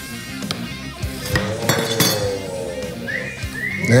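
A knife cutting through a glazed loaf cake, with several sharp clinks as the blade meets the marble cutting board, over background music.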